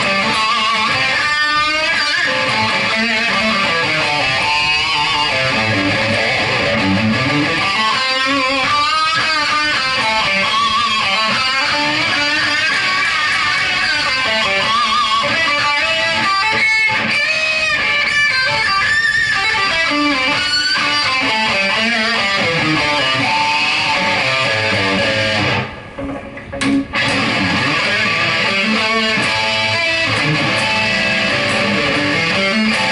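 Gibson Firebird Zero electric guitar played through a Marshall amp, distorted by the amp's gain channel with an overdrive pedal added on top. Riffs and chords run continuously, with a brief dip in level about 26 seconds in.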